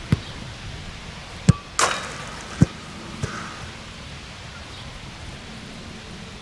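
Football being struck on grass: a few sharp, irregular thuds, with a brief rushing noise just before two seconds in.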